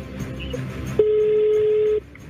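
A single steady telephone tone starts abruptly about a second in and holds at one pitch for about a second, cutting off sharply. Before it there is faint background music.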